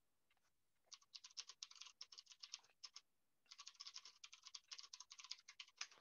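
Faint, quick, irregular clicking of a computer keyboard being typed on, in two runs of about two seconds each with a short pause between.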